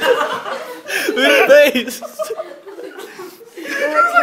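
A group of young people laughing and chuckling, with a loud burst of laughter about a second in that fades around three seconds and picks up again near the end.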